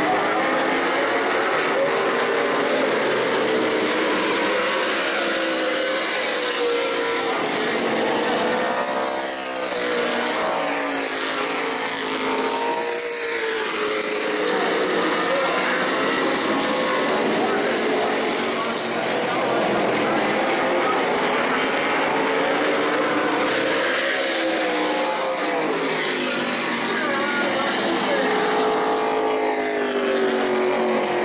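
Modified stock car V8 engines running laps on a paved oval, their pitch rising and falling repeatedly as the cars accelerate down the straights and lift for the turns.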